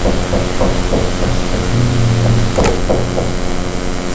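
A steady electrical or machine hum fills the room, with a few faint, short clicks, and a brief low tone rises from it about two seconds in.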